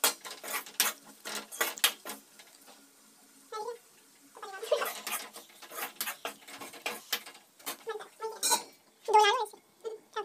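A steel ladle clinking and scraping against a steel kadai as food is stirred, with a run of quick strikes at the start and more scattered knocks later. Short high calls from a voice, a cat's or a person's, break in about a third of the way in and again, louder, near the end.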